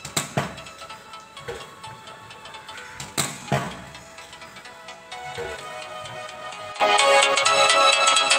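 Cricket bat striking a tennis ball twice, about three seconds apart, each crack followed by a softer knock, over faint background music. Near the end, louder music starts.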